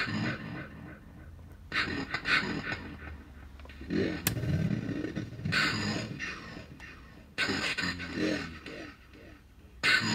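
Short vocal sounds put through a circuit-bent telephone's effects chain (a kit voice changer, a homemade spring reverb and a PT2399 delay) and coming out warped and unintelligible. There are about five separate bursts, each with a trailing smear.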